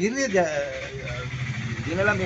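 A man speaking briefly, then a small motor vehicle engine running steadily with a low, rapid pulse beneath the talk.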